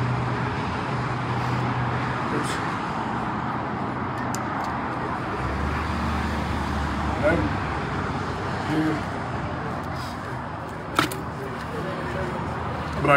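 Steady outdoor background noise of road traffic, with a vehicle's low engine rumble rising for a second or two about halfway through and a single sharp click near the end.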